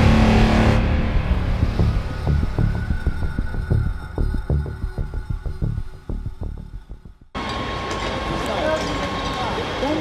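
Intro music with a steady beat, fading out over the first seven seconds. Then an abrupt cut to fire-scene sound: a steady rumble of running fire-engine motors with a thin steady whine, and people's voices.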